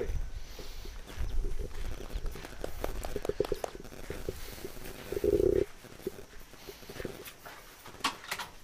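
Soft, irregular footfalls over a low rumble, with a louder scuff about five seconds in, after which the rumble stops.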